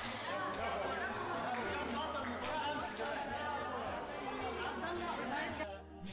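Many children and adults chattering at once in a tiled indoor pool hall, with faint background music underneath.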